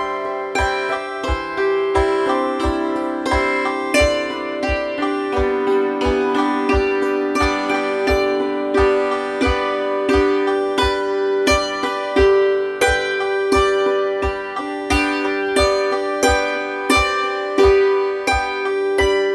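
Hammered dulcimer played with two hammers: a steady, even run of struck string notes, several a second, each ringing on under the next.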